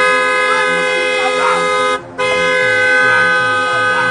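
A car horn sounding in two long, steady blasts, broken briefly about two seconds in.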